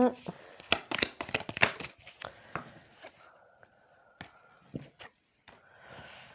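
A deck of oracle cards being shuffled by hand, with a quick run of card flicks and slaps over the first two seconds, then a few scattered clicks as cards are dealt onto a cloth mat.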